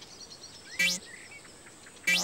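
A single cartoon bounce sound effect for the bouncing beach ball about a second in: a quick rising zip with a short low thud. It sits over a faint background with light chirps.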